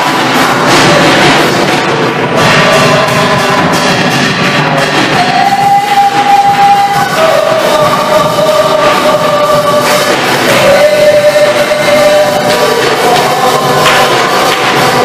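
Christian worship song with several voices singing long held notes over the accompaniment, and hand clapping.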